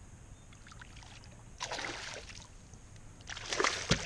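A hooked bass splashing at the surface beside a kayak as it is brought in: a first short bout of splashing, then a louder, longer one near the end with a sharp knock.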